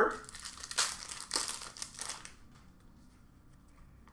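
Rustling and crinkling of trading cards and their packaging being handled, in a few short bursts over the first two seconds, then near quiet.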